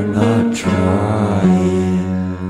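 Background song: a singing voice holds long notes over its accompaniment.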